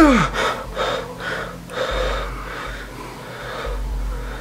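A man's short voiced cry falling in pitch, then heavy, ragged gasping breaths, one after another.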